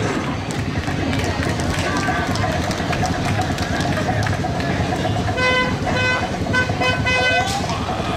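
Busy street-parade din of crowd voices and passing vehicles; a little past five seconds in, a vehicle horn gives a quick run of about five or six short toots over two seconds.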